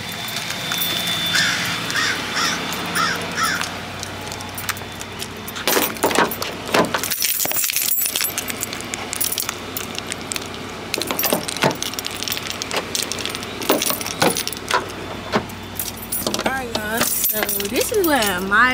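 A bird calling about five times in quick succession, starting about a second in, followed by a run of scattered clicks and knocks from handling.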